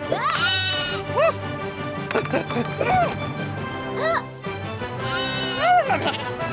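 Cartoon goat bleating several times: a long wavering bleat just after the start and another near the end, with shorter calls between, over background music.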